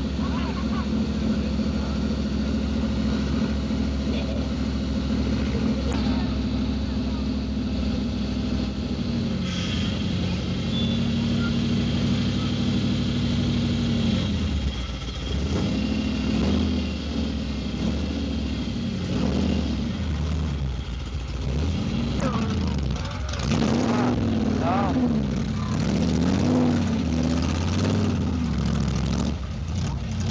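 Off-road competition jeep's engine running hard, held at a steady high pitch for the first half, then revving up and down repeatedly as the jeep churns through mud.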